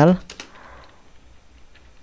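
A few faint clicks of typing on a computer keyboard.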